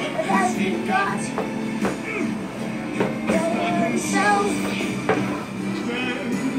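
Recorded music playing: an instrumental passage with a steady beat, without clear lyrics.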